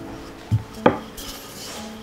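Wooden rolling pin working over dough on a board, knocking against it twice in quick succession about half a second in, followed by a brief soft brushing.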